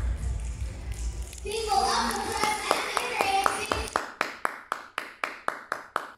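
The end of a live pop song: the backing track with its bass beat fades out under cheering voices. Then come steady hand claps, about four a second, growing quieter.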